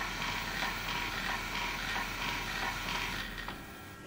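ProMinent Sigma motor-driven diaphragm dosing pump running with a steady mechanical whirr and gear noise. Its low hum cuts out about three and a half seconds in as the pump stops on the controller's stop command.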